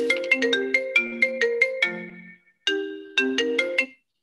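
A phone ringtone: a quick marimba-like melody of short notes, broken by a brief gap about two and a half seconds in, then played again before it cuts off abruptly near the end.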